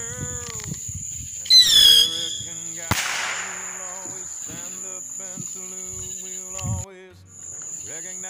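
Bottle rocket going off: a short, loud whistle falling in pitch about a second and a half in, then a sharp pop about a second later with a brief crackle after it. Crickets chirp steadily in the background.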